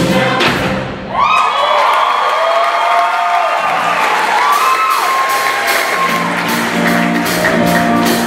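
Mixed show choir singing with a backing band: the band drops out about a second in and the choir holds sustained chords alone, then the bass and drums come back in near the end.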